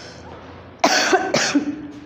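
A woman coughing twice, two short loud coughs about half a second apart, about a second in.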